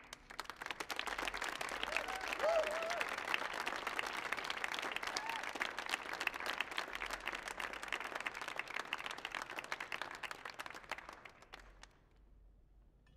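Audience applauding at the end of an acoustic song, with a voice calling out about two and a half seconds in; the clapping fades away near the end.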